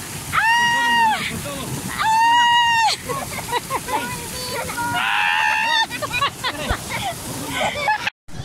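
Two long high-pitched shrieks of about a second each, then more excited yelling, over the steady splash of fountain spray falling onto the water around a pedal boat.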